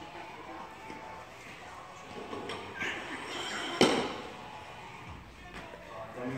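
A single sharp bang or slam about four seconds in, with a short echo after it, over quiet background music and murmured voices.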